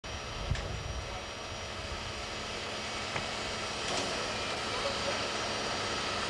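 Steam locomotive moving slowly past with a steady hiss of escaping steam over a low rumble, and a few light knocks.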